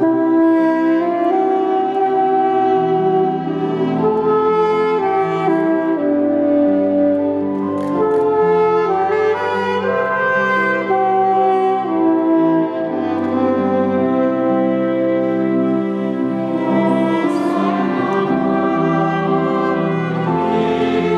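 Saxophone playing a slow hymn melody in long held notes over sustained chords from accompanying instruments.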